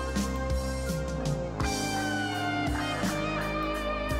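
Sampled music with guitar playing back from a sample editor: held notes over a steady low bass, with a few notes sliding downward in pitch from a little before halfway to about two-thirds through.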